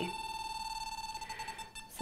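Handheld EMF meter's audible indicator sounding a steady high-pitched tone with a fast flutter in its loudness, signalling a strong field from a switched-on electric heating blanket; it cuts off just before the end.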